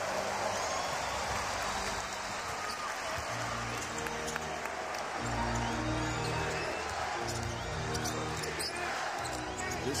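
Basketball game sound in an arena: a basketball being dribbled, sneakers squeaking on the hardwood, and a steady crowd roar. From about three and a half seconds in, arena music plays a run of low, stepped bass notes until near the end.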